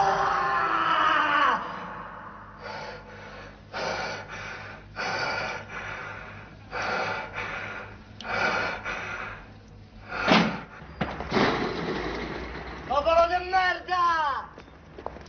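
A person's voice without clear words: a long, wavering cry at the start and another near the end, with short vocal bursts about once a second in between and a single sharp knock a little after ten seconds.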